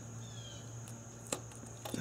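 Electrical connector being unplugged from a camshaft position sensor (Hall sender): faint handling with one sharp click a little after the middle and a lighter click near the end as the locking tab is pressed down, over a faint steady hum.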